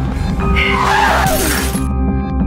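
Background music under a loud crash of shattering glass as a car strikes a pedestrian and its windscreen breaks. The crash cuts off suddenly just before the end, leaving the music.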